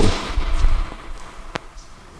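Footwork on a sports-hall court floor: a low thud as a lunge lands and recovers, then one sharp tap about one and a half seconds in, echoing in the hall.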